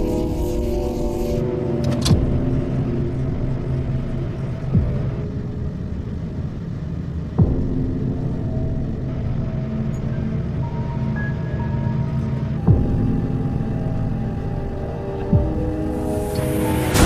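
Tense background score of held chords over a deep rumble, cut by about five sudden hits spaced a few seconds apart.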